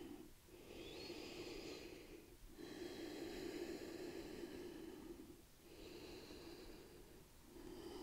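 A person's slow, faint breathing: four long breaths of one to three seconds each, with short pauses between them.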